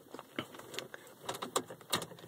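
Car key being turned back to off in a Volvo 850's ignition: a few light clicks and a faint jangle of the key ring.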